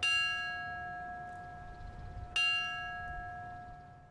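A bell tolling for a funeral: two strikes about two and a half seconds apart, each ringing on and fading slowly.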